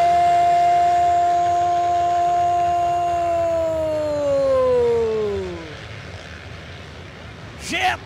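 An announcer's long held shout: one note kept level for about four seconds, then falling in pitch as it trails off about five and a half seconds in. Beneath it, a low haze of dirt-bike engines from the racing pack.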